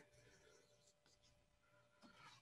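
Near silence, with faint scratching of a pen on paper as a circle is drawn.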